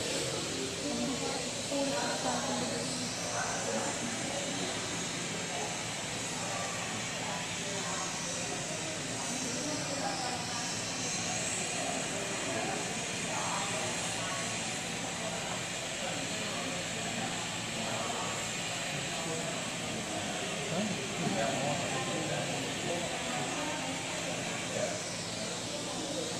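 Lampworking bench torch flame hissing steadily as it heats a borosilicate glass rod to working softness.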